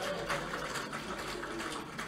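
A room full of people laughing together, a continuous crowd laugh that dies away at the end.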